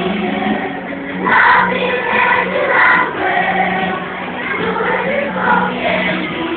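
A choir singing a song, with a steady held low note from the accompaniment underneath.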